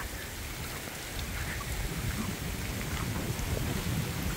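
Steady heavy rain from a hurricane rain band falling on lawn and trees, with a low rumble beneath it, slowly growing louder.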